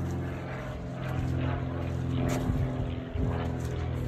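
A steady low motor hum that does not change in pitch, with one short tap a little past halfway.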